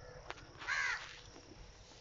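A single short call from a bird in the background, about two-thirds of a second in, with a faint click just before it, over low room noise.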